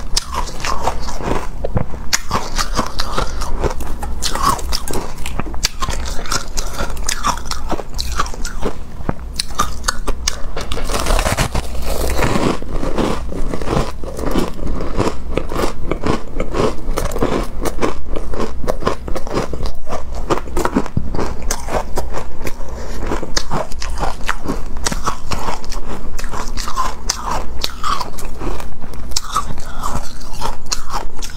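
Close-miked crunching and chewing of packed shaved ice, bitten off in chunks: a dense, continuous run of crisp crunches.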